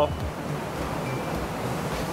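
Steady rushing of water from an urban plaza waterfall spilling into a large fountain pool.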